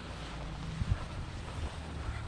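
Wind buffeting a helmet-mounted camera's microphone: a steady low rumble with a couple of brief thumps about a second in.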